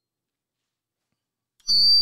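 Dead silence, then near the end a brief, loud, high-pitched squeal from a misbehaving microphone, which the speaker finds annoying and blames on coming too close to it.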